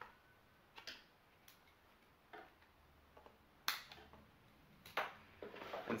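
About half a dozen short, scattered clicks and taps of a handheld digital multimeter and its test leads being handled and readied for a battery voltage check, the loudest a little past halfway.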